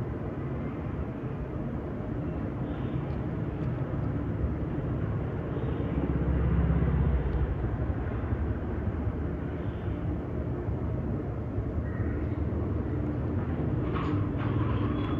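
Steady low background rumble that swells a little for a second or two around the middle, with a few faint, brief higher sounds over it.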